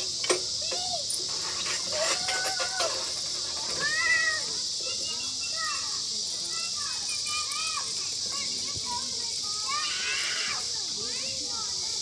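Children's voices calling and chattering in short rising-and-falling cries while they play, with no clear words. A steady high hiss runs underneath, and there are a couple of sharp knocks in the first second.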